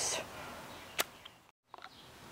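A single sharp click about a second in, over faint background noise, followed by a brief dead-silent gap where the video is cut.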